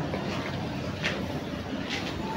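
Steady ambient background noise with no distinct events, a low even hiss and rumble.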